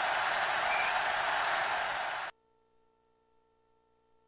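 A loud, steady hiss of noise that cuts off suddenly a little over two seconds in, leaving only a faint steady hum.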